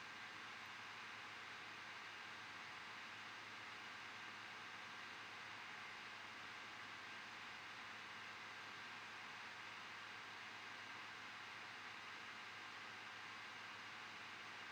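Near silence: a faint, steady hiss with no distinct events.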